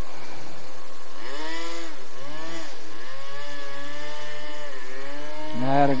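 Radio-controlled airboat's motor and air propeller running on the water. The pitch rises and falls a few times in the first half as the throttle is worked, then holds steady.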